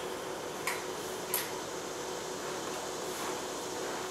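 Two faint light clicks, about two-thirds of a second apart, of metal canning lids handled with a magnetic lid lifter and set onto glass jars, over a steady background hum like a kitchen fan.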